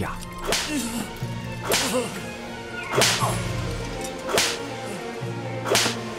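Whip lashes in a staged flogging sound effect: five sharp cracks, about one every second and a half, over steady background music.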